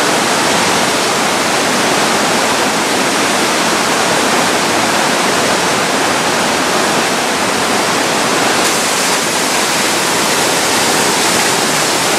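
Steady rushing of a waterfall plunging down a rock cliff into a fast-flowing river, the falling and running water making one continuous even roar.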